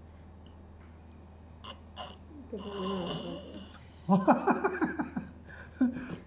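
A person blowing hard into a drinking straw pushed through a plastic bottle's cap, a breathy, strained blow, followed by a burst of laughter.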